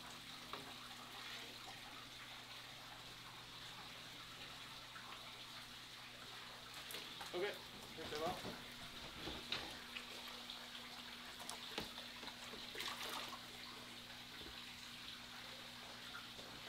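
Steady running water with a low hum from a large aquarium's pumps and filtration. A few short splashes and knocks come in the second half as the long-handled net with a stingray in it is lifted out of the tank.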